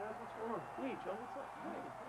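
Men's voices, a word or two of talk and laughter.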